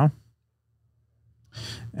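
A man's voice trails off at the end of a phrase, a second of silence follows, then an audible intake of breath just before he speaks again.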